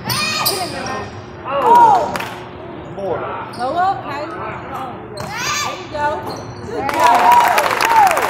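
Game sounds in a gym: a basketball bouncing on the hardwood floor, sneakers giving short, sharp squeaks as players cut and stop, and voices echoing around the hall. The noise grows denser and louder near the end.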